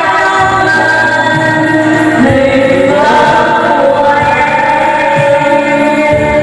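A group of people singing together through microphones over loud music, their voices holding long, gliding notes.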